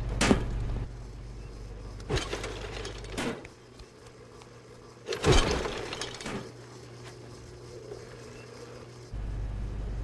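A series of five or six separate sharp knocks and crashes, the loudest about five seconds in, over a steady low rumble.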